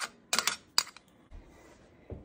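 A metal utensil clicking against a china plate several times in quick succession as chopped garlic is scraped off it into a pot.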